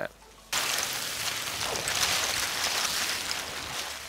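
High-pressure water hose jet blasting oyster and clam shells off a barge deck into the river: a steady rushing hiss of spraying, splashing water that starts abruptly about half a second in.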